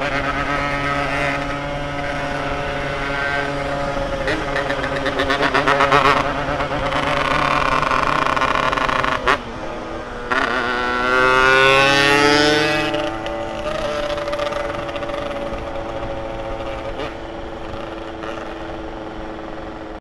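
Yamaha RX-King two-stroke motorcycle engine running under way, its note rising and falling with the throttle. The sound drops out briefly just after nine seconds in, then the revs climb steeply and fall back around twelve seconds in.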